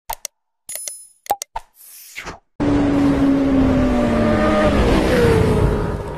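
Sound effects of a subscribe-button animation: a few sharp clicks and pops, with a brief bright ringing chime about a second in. From about two and a half seconds in comes a loud, steady roaring whoosh whose pitch slowly falls.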